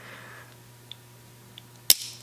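Winchester 1873 set trigger tripping with a single sharp metallic click near the end, releasing the cocked hammer, after two faint ticks of the steel parts being handled. The click shows that the set trigger assembly, rebuilt with an old catch hook, works.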